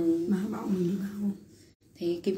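A woman's voice chanting a Then ritual song, holding long, slightly wavering notes, then breaking off for a breath near the end.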